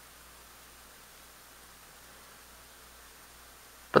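Faint steady background hiss of room tone, with a thin steady high tone running through it; a voice starts right at the end.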